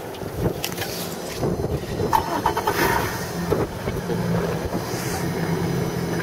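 A boat motor running with a steady low hum, clearer in the second half, under rubbing and knocks from the camera being handled.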